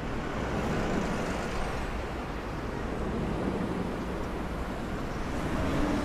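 Steady city traffic ambience: a continuous low rumble of road traffic with no distinct events.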